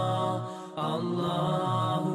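Intro music: a chanted vocal line with long held, wavering notes. It breaks off briefly about half a second in, then carries on.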